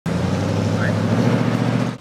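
Pickup truck engine idling, loud and steady.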